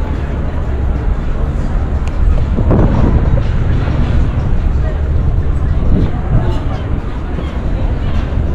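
Outdoor pedestrian ambience: a steady low rumble with brief snatches of passersby talking, about three seconds in and again near six seconds.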